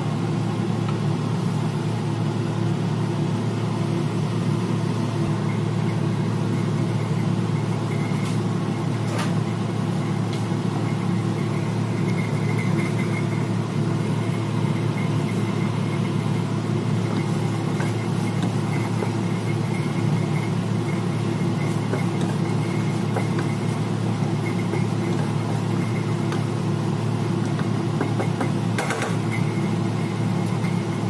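A steady mechanical hum with a faint high whine, unchanging throughout, while a wok of black chicken adobo cooks down on the stove. There is a light knock near the end.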